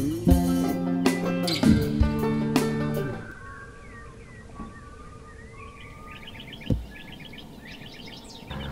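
Acoustic guitar music that stops about three seconds in, leaving birds chirping and calling with short sweeping notes, and one low thump near the end.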